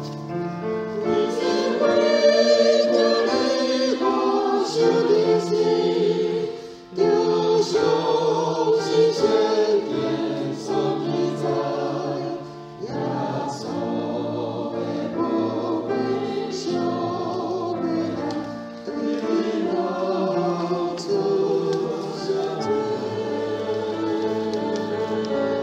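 Church choir singing a slow hymn-anthem in Taiwanese Hokkien, in sustained phrases with brief breaks between them about 7 and 13 seconds in.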